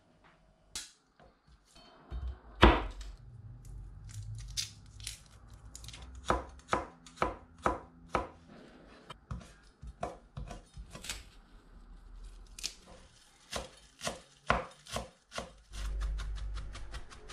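Kitchen knife slicing garlic cloves on a plastic cutting board. Each stroke is a sharp knock of the blade on the board, about two a second, with a louder knock a few seconds in. Near the end it switches to chopping parsley.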